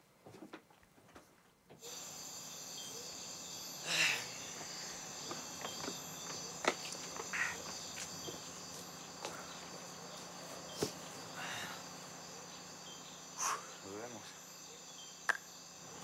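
Crickets chirring steadily outdoors, coming in after about two seconds of near quiet, with a few short clicks and knocks scattered through.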